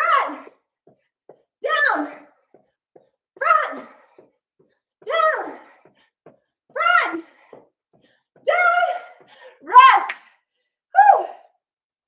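A woman's voice giving short, high shouted calls about every second and a half to two seconds, each falling in pitch, with silence between them.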